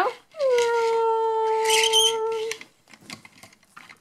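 A voice holding one long howl-like 'ooo' note for about two seconds, with a short drop in pitch at its start.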